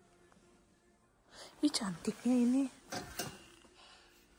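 A short murmured vocal sound from a person, starting about a second and a half in, with a few sharp clicks or knocks around it.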